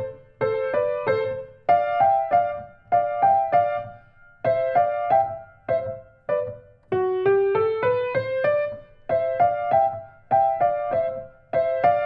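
Piano, right hand alone, playing an étude in parallel thirds at an allegretto tempo: each stroke sounds two notes together, in short repeated groups, with the same touch on both notes of each third.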